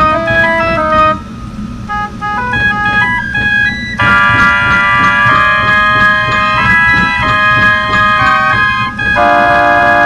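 Organ music: many held notes moving through a tune. It thins out and drops in level about a second in, then comes back fuller and louder from about four seconds in, with a steady beat underneath.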